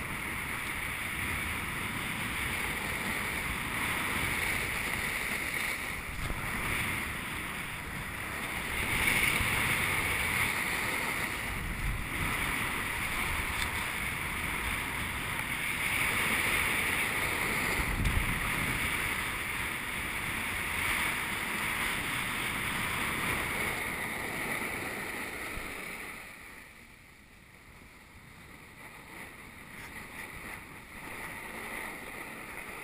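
Snowboard sliding and carving down a groomed snow run: a steady scraping hiss of the board's edges on the snow, swelling and fading through the turns, with wind rushing over the camera microphone. It drops off sharply a few seconds before the end.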